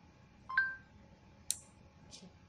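A short two-note electronic beep from the smartphone's Google voice-input prompt, marking the end of listening. About a second later comes a single sharp click from the relay module switching the green LED on.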